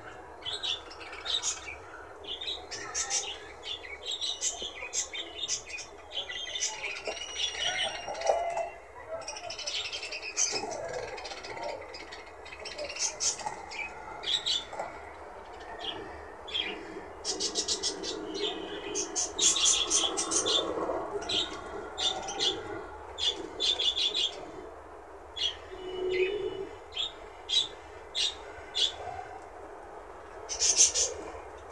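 A small flock of pet budgerigars chirping and chattering, with many quick, overlapping high chirps and soft warbling between them.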